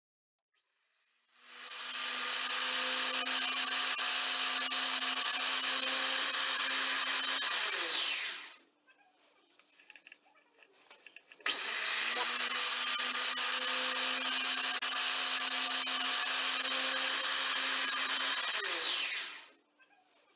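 Electric chainsaw-chain sharpener's grinding-wheel motor run twice, each time for about six or seven seconds, spinning up and then winding down with a falling whine; it runs while sharpening the cutters of the chain clamped in its vise. Between the two runs come a few light clicks as the chain is moved to the next tooth.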